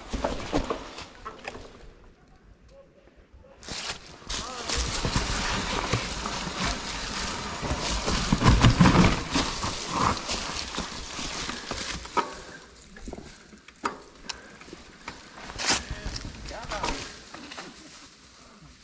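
Mountain bike rolling down a trail deep in dry fallen leaves: a continuous rustling crunch of leaves under the tyres, mixed with knocks and rattles from the bike over roots and rocks. Loudest from about four seconds in to around twelve seconds, then patchier with separate knocks.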